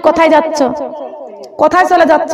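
Speech only: a woman preaching in Bengali, with a short break between phrases about one and a half seconds in.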